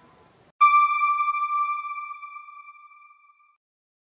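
A single bright electronic chime, one high note struck about half a second in and fading away over about three seconds: the news channel's end-card sting.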